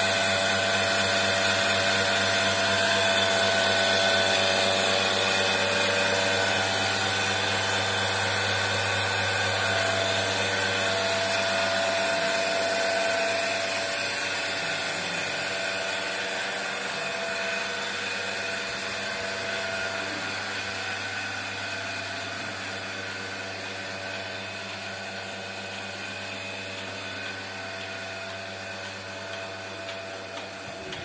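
Electric motor and belt-driven vacuum pump of a single-bucket milking machine running steadily with a constant hum and whine. It grows gradually fainter over the second half.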